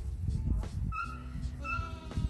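Young goat kids bleating: two short, high-pitched calls about half a second apart, over a low rumble.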